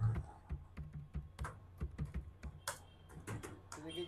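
Computer keyboard keys tapped in a quick, irregular run of about a dozen faint keystrokes as a name is typed.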